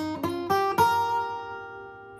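Acoustic guitar played fingerstyle: four quick plucked notes, each higher than the last, picking out the song's vocal melody over a chord. The last note is left ringing and fades away.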